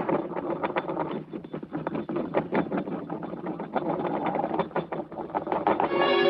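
Cartoon sound effect of a flat round disc spinning and wobbling down on a floor as it settles: a fast, uneven rattle of its rim knocking against the floor.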